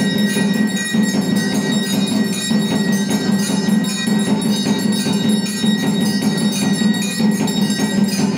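Brass puja hand bell (ghanta) rung continuously, as is done during the aarti offering, its ringing tone steady throughout, over a steady low hum and other percussion.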